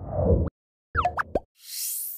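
Animated end-card sound effects. First comes a short low rush, then a quick run of rising, bubbly pops about a second in, and then a high shimmer sweeping upward near the end as the title text and sparkle dots appear.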